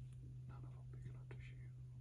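Faint whispering voices in short bursts over a steady low hum.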